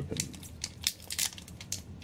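Foil trading-card booster pack wrapper crinkling and crackling in irregular bursts as it is worked at by hand, trying to tear it open.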